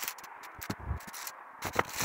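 Footsteps and rustling through dry leaf litter and twigs: scattered crackles and scrapes, with a dull thud about a second in.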